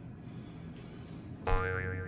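A comic 'boing'-type sound effect, added in editing as an 'Oops!' blooper cue, starts suddenly about one and a half seconds in and rings on with a wobbling pitch. Before it there is only faint room tone.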